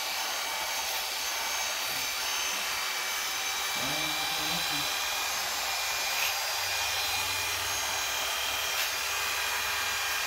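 Electric hair clipper running steadily while cutting hair, with a few faint clicks as it touches the comb.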